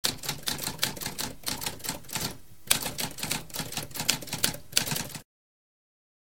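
Typewriter typing: a quick run of keystrokes, several a second, with a brief pause about two and a half seconds in. The typing stops abruptly a little after five seconds.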